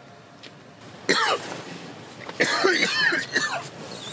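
A man coughing: one cough about a second in, then a longer run of coughs from about two and a half seconds in.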